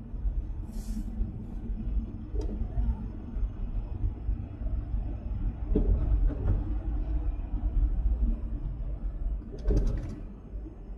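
Car driving at road speed: a steady low rumble of road and wind noise, with a brief hiss about a second in and a burst of crackling clicks near the end.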